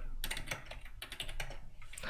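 Typing on a computer keyboard: a quick, irregular run of key clicks as numbers are entered.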